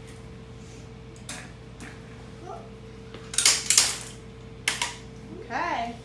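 Several short clattering handling noises, the loudest a close pair about three and a half seconds in, over a steady electrical hum. A brief voice sound that rises and falls comes near the end.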